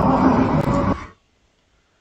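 About a second of loud night-time commotion from a phone recording outside a residential building being used as a migrant hotel. It stops abruptly as the playback is paused.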